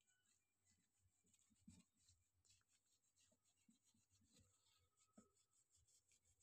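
Near silence: faint rubbing and scraping as hands work on a laptop's copper heatsink, with a couple of light ticks.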